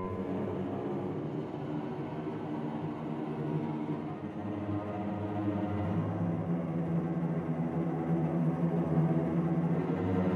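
Orchestral music: a dense, slow-moving sustained texture with a low held note entering about six seconds in, growing louder toward the end.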